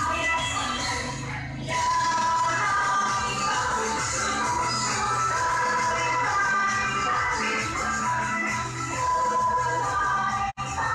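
Latin American-style dance music with steady percussion, heard in a small hall as the accompaniment to a children's dance performance.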